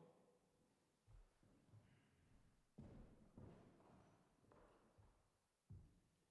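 Near silence, with faint footsteps on a wooden stage floor: soft, irregular thumps about a second apart.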